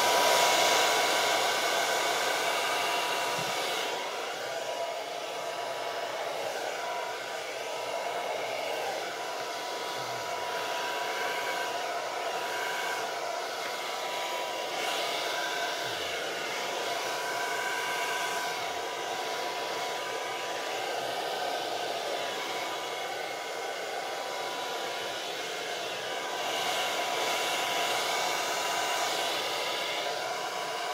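Handheld hair dryer blowing continuously, a steady rush of air with a thin steady whine from its motor. It is loudest in the first couple of seconds and swells again near the end as it is moved about.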